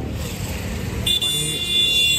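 Road traffic rumbling, then about a second in a vehicle horn sounds one steady, high-pitched blast lasting about a second and a half.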